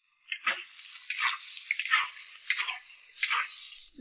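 Metal spatula stir-frying a wok full of shrimp, squid, potato and freshly added onion: a series of irregular scrapes and tosses against the iron wok over a steady sizzle.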